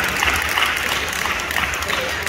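Applause: hands clapping in a hall, a steady patter of claps.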